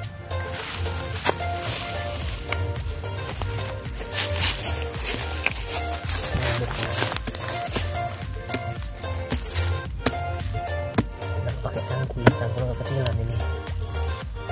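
Background music with a steady bass beat. Beneath it, a small hand digging tool chops into packed soil and dry leaf litter, with a few sharp knocks.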